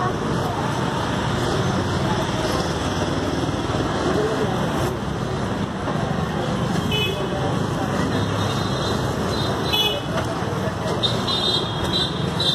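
Busy street traffic noise with short vehicle horn toots, one about seven seconds in and another around ten seconds, over indistinct voices.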